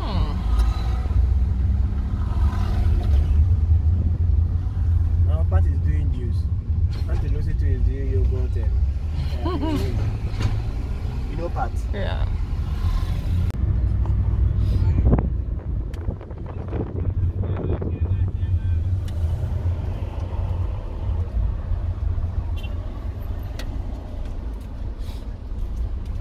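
Steady low rumble of a Chevrolet's engine and road noise heard inside the moving car's cabin, with voices talking now and then in the first half and a single thump about 15 seconds in.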